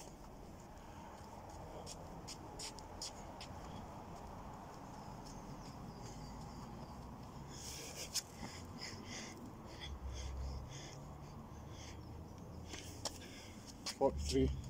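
A man breathing hard while doing burpees with push-ups, with scuffs and scrapes of gloved hands and trainers on grass; a run of short scrapes comes about eight seconds in as he drops into the push-up position.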